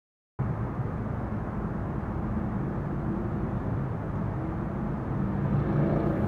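Steady low rumble of city traffic, starting abruptly just under half a second in.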